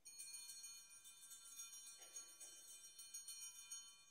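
Altar bells ringing faintly, a cluster of small bells jingling steadily for about four seconds and stopping at the end. They mark the elevation of the chalice after its consecration.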